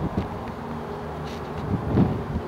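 Electric power-folding side mirror motor buzzing steadily as the mirror folds out, with a short click near the start.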